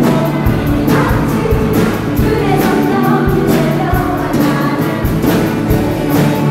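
A church choir singing a praise song in chorus, with a band accompanying it on a steady beat.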